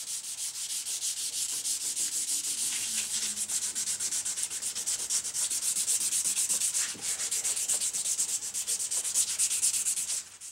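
A black guitar pickguard rubbed quickly back and forth on abrasive paper laid flat on a bench, in an even run of several strokes a second with a brief break about seven seconds in. It is being scuffed to take the shine off its surface.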